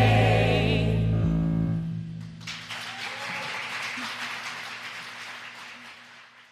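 A stage cast's closing held chord, voices wavering in vibrato over a steady low accompaniment note, breaks off about a second in and dies away. Audience applause then starts about two and a half seconds in and fades out.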